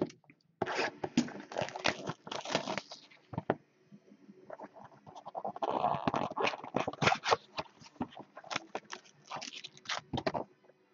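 Hands opening a Topps Supreme Football trading-card box: irregular scraping, crinkling and tearing of cardboard and wrapping, densest from about five to seven seconds in.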